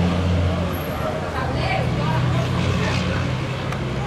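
A motor vehicle's engine running steadily close by, a low hum whose pitch shifts about a second in, with faint voices over it.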